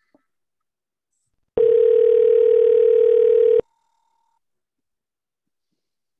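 Telephone ringback tone: one steady two-second ring starting about a second and a half in, the sign that the dialled phone is ringing and the call has not yet been answered.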